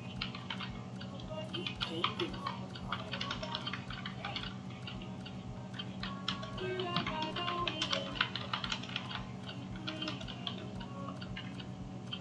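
Typing on a computer keyboard: runs of quick keystroke clicks with short pauses between them, over a low steady hum.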